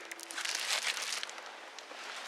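Irregular rustling and crinkling of a tarp brushing close past the microphone, with small crackles.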